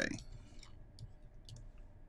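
A few faint, scattered clicks of a pen stylus tapping on a tablet screen while digital ink is drawn.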